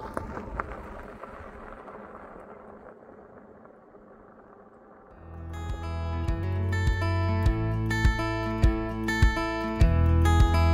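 Tyres of the Eahora Juliet e-bike crunching on a gravel road, fading as it rides away. About halfway through, background music with acoustic guitar and a steady beat comes in.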